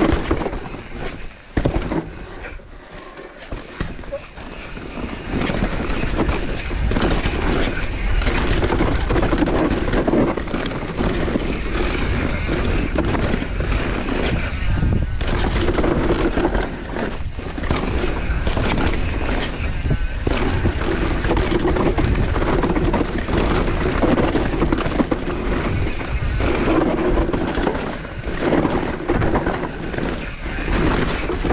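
Propain Spindrift mountain bike in mullet setup descending a loose dirt forest trail at speed, heard from a camera on the rider: tyres rolling and scrubbing over dirt and roots, with wind rumbling on the microphone and the bike rattling over the bumps. There is a brief quieter stretch about two seconds in.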